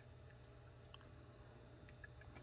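Near silence: room tone with a faint low hum and one or two faint ticks.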